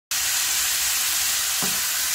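Thinly sliced beef sizzling steadily in a hot frying pan.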